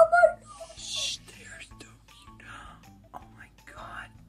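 Soft whispered, breathy speech over quiet background music, with a short high-pitched vocal sound right at the start.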